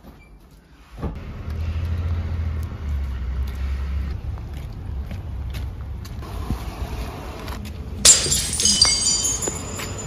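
Street traffic: a steady low rumble of vehicles that starts suddenly about a second in. Near the end comes a loud, high-pitched ringing squeal lasting about a second and a half.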